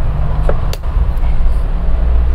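Two short clicks about a quarter second apart, under a second in, as the filming phone is settled into position. They sit over a loud, steady low rumble.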